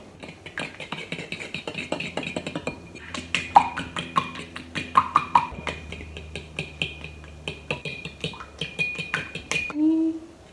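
A metal spoon clinking and scraping against a ceramic bowl in quick, irregular taps as flour is stirred in, over background music.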